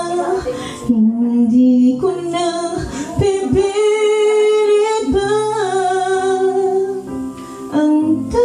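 A woman singing into a microphone, holding long notes that step from pitch to pitch, over an instrumental backing with guitar.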